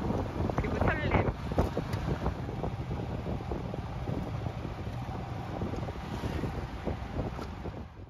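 Tuk-tuk engine running and road noise while riding in the open passenger seat, with wind buffeting the microphone. A brief voice sounds about a second in.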